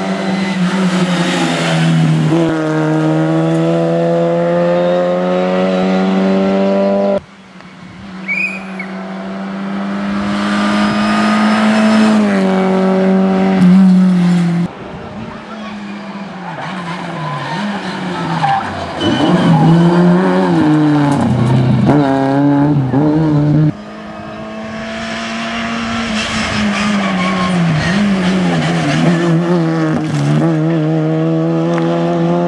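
Škoda Felicia rally car's engine at high revs as it drives past at stage speed, the note held high for long stretches. Around the middle, the pitch drops and climbs several times through gear changes and braking for a corner. The sound breaks off abruptly three times where the footage cuts between shots.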